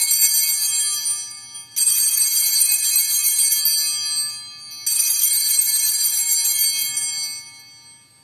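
Altar bells rung in three peals at the elevation of the consecrated host. One peal is already ringing, and fresh peals come about two and five seconds in. Each is a cluster of high, bright tones that fades away.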